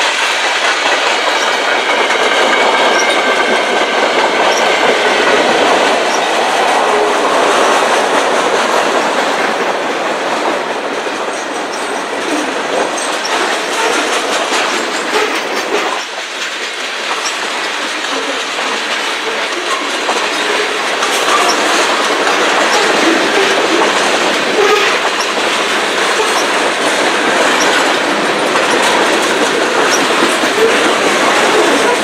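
Freight cars of a mixed freight train rolling past close by: steady rumble and rattle of steel wheels on the rails, with a faint high wheel squeal that fades out over the first few seconds.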